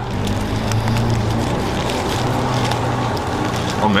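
Steady background noise: a low even hum under a constant hiss, with a few faint ticks.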